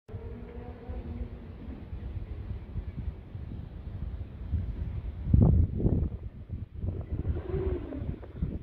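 Wind buffeting the microphone in uneven gusts, with the strongest gust about five seconds in, and a faint steady hum in the first second or two.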